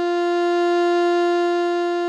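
Alto saxophone holding one long, steady note without vibrato: a written D, which sounds as concert F on the alto.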